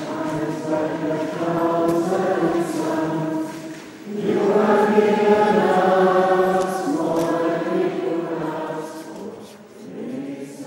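A group of voices singing a devotional song together in long held phrases, with a breath pause about four seconds in and again near the end.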